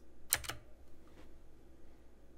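A quick cluster of sharp clicks at the computer about a third of a second in, followed by two much fainter clicks around a second in, over a faint steady room hum.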